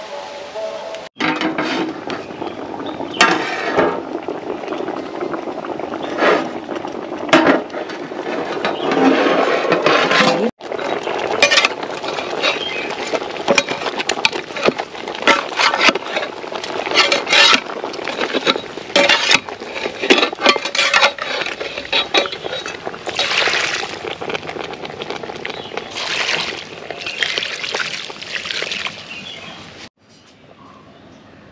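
Metal ladle clinking and scraping against an aluminium cooking pot of beef bones and onions as it is stirred, in many short, irregular clinks.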